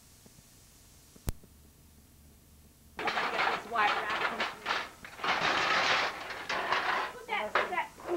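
A very quiet stretch of tape with one sharp click about a second in, then, about three seconds in, indistinct voices talking loudly in a small room, in phrases with short gaps.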